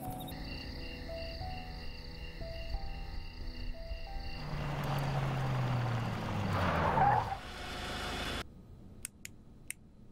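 Background music with a repeating pattern of steady notes, then, from about four seconds in, a car going past. Its engine tone falls in pitch as it passes, loudest about seven seconds in, and it cuts off abruptly, leaving a few faint clicks.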